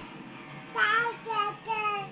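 A baby vocalizing in three drawn-out, high-pitched cries or coos, starting a little under a second in, the first rising and then falling in pitch.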